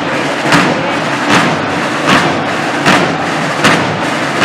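Ceremonial drums beating a slow, even cadence: five strokes a little under a second apart, each ringing briefly, over a steady crowd murmur.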